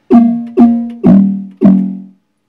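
Vermona Kick Lancet analog kick drum synthesizer triggered four times, about two hits a second, tuned high with its FM section on, giving a pitched, bit-crushed-sounding tone. Each hit starts with a quick drop in pitch and then decays; the last two sound lower than the first two.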